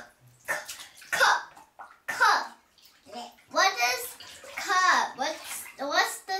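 A young child's voice talking in short, unclear bursts in a tiled bathroom.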